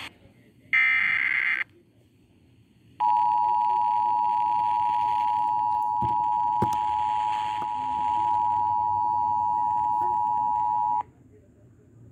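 Emergency Alert System two-tone attention signal, a steady dual tone near 1 kHz, sounding for about eight seconds over an FM radio to herald a tornado warning. About a second in, a short harsh burst of higher tones comes first.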